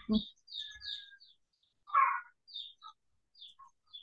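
A bird chirping in short, high notes, several in quick succession and then more spaced out. There is a brief, louder sound about two seconds in.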